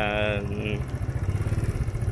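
Motorcycle engine running steadily as the bike rolls along, a continuous low rumble.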